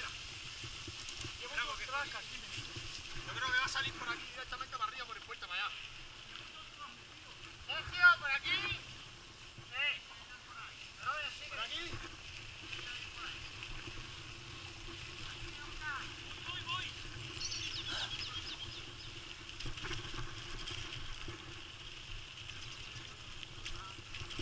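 Mountain bike riding over a dirt track, recorded on a camera carried on the bike or rider: a steady rumble of tyres and riding noise, with snatches of indistinct voices now and then, the loudest about eight seconds in.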